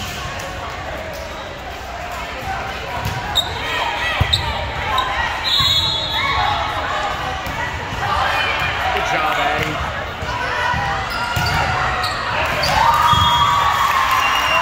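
Volleyball rally in a large gym hall: a few sharp hits of the ball about three to five seconds in, over players' calls and spectators' voices that grow louder near the end.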